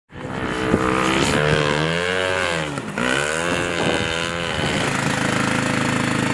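Small single-cylinder engine of a Baja SAE off-road buggy running under load, its revs rising and falling several times, with a brief drop about three seconds in.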